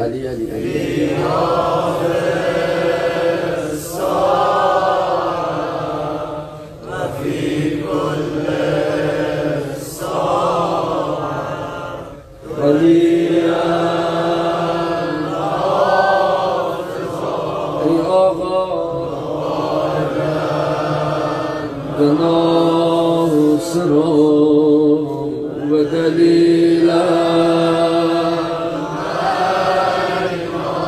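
A man chanting a Shia mourning lament (rowzeh) unaccompanied, in long drawn-out melodic phrases with short breaks for breath.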